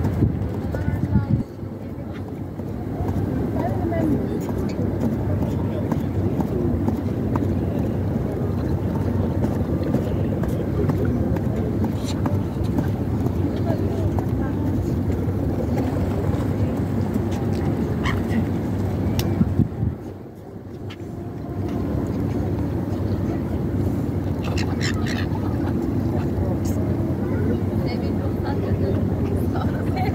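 Indistinct voices of people talking over a steady low rumble, with a few short high calls from gulls now and then.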